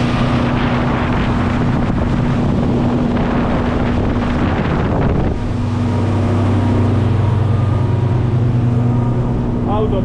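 Twin Volvo Penta D4 diesel engines of a motor yacht running steadily near full throttle, about 30 knots. For the first five seconds the rush of hull spray and wind is heard over them; then the spray and wind drop away and the steady low engine hum dominates, as heard inside the cabin.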